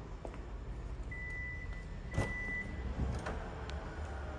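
Tailgate of a 2017 Hyundai Santa Fe opening: a steady high beep lasting about a second and a half, a sharp latch click in the middle of it, and a second click about a second later as the hatch lifts.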